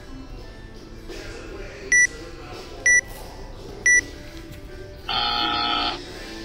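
Workout timer counting down to the 20-minute time cap: three short high beeps a second apart, then a long buzzer tone about a second long marking the end of the workout.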